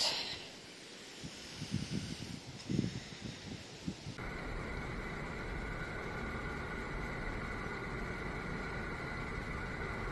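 Faint rustling with a few soft knocks for the first four seconds. Then, starting abruptly, a van's engine idles with a steady hum, heard from the driver's seat with the door open.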